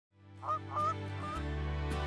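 Three short goose-like honks, each ending with a slight upward lilt, over the opening of soft instrumental music whose bass note comes in about a second and a half in.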